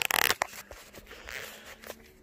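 Handling noise from the camera as it is picked up: a loud rustle at the start as it rubs against clothing, then softer rubbing and a click near the end.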